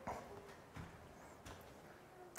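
A quiet room with three faint, short knocks roughly three-quarters of a second apart.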